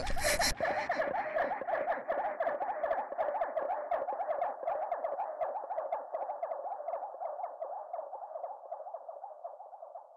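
Closing seconds of a breakcore track: the full beat cuts off about half a second in, leaving a rapid stream of high electronic chirping blips that fades out gradually.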